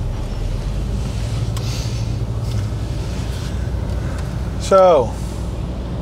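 Steady low rumble of a car idling, heard from inside the cabin. About five seconds in comes a brief, loud voice sound that falls in pitch.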